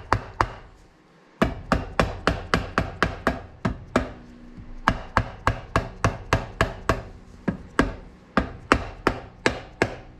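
Rubber mallet tapping a TRD supercharger's housing, a steady run of light, sharp taps about three or four a second with a brief pause about a second in. The housing is being knocked evenly down over its locating dowels and studs to seat it on the supercharger case.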